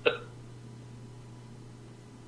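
A single short vocal sound from a man, a quick hiccup-like burst, right at the start, followed by a faint steady low hum.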